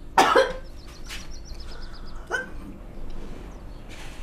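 A woman gagging and coughing: one loud retch about a quarter of a second in, and a weaker one about two seconds later.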